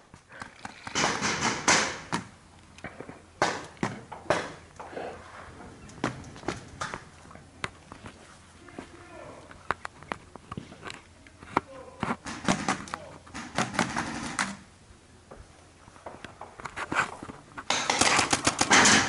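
Paintball markers firing single shots and short strings, with a quick run of shots near the end. Voices are heard shouting faintly between shots.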